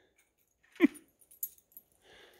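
A small dog gives one short yelp that drops steeply in pitch about a second in, followed by a few light jingles of its collar tags.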